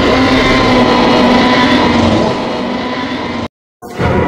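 Tyrannosaurus rex roar sound effect: one long, loud, rasping roar whose pitch sinks slightly, cut off abruptly near the end.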